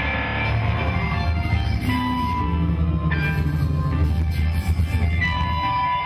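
Loud rock music with electric guitar lines over a heavy, steady bass.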